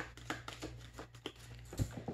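A deck of tarot cards shuffled by hand: a quick run of soft card clicks, with a low thump near the end.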